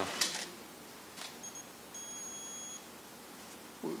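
A faint, high-pitched electronic beep: a brief blip about a second and a half in, then a steady tone lasting just under a second.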